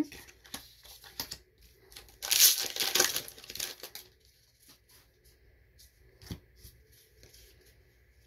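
A foil booster-pack wrapper being torn open and crinkled, a noisy rip of about two seconds starting a little over two seconds in, with light clicks of cards being handled around it.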